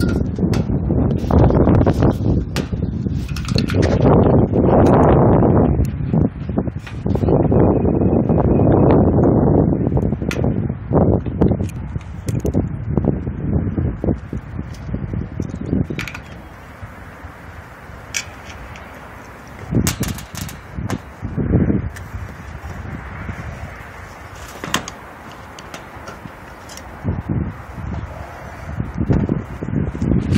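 Loud rustling and handling noise for about the first ten seconds, then scattered sharp metallic clicks and knocks from a wrench working on a condenser fan motor's mounting bolts through the wire fan guard.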